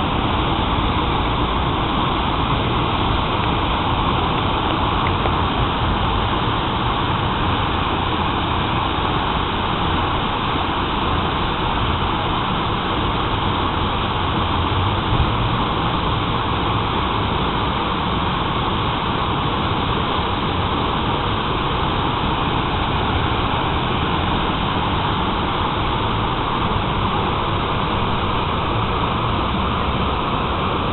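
Water from a stepped stone fountain cascading over its ledge into the pool: a steady rush that neither rises nor falls.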